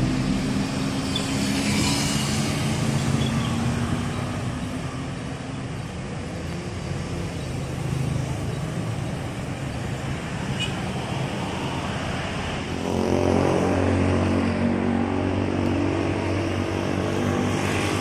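Urban street traffic, with motorcycles and cars passing. About two-thirds of the way in, a heavier vehicle's engine grows louder and stays prominent.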